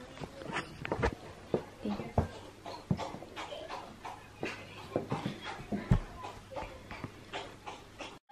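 Irregular soft thumps and knocks of someone walking with a handheld camera, with faint voices in the background.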